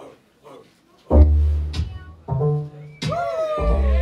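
Hip-hop backing track starting over the sound system about a second in, with a heavy, deep bass. From about three seconds in, a melodic line that slides in pitch comes in over sustained bass.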